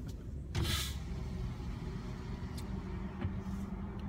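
A car running, heard from inside its cabin as a steady low rumble. A brief hiss comes about half a second in.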